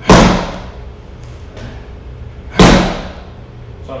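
Two punches landing hard on a handheld strike pad, about two and a half seconds apart. Each blow is a loud impact that dies away briefly in the room.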